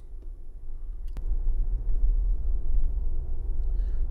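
Low rumble of a Ford Bronco heard from inside its cab, getting louder about a second in as the truck moves, with a single sharp click just after.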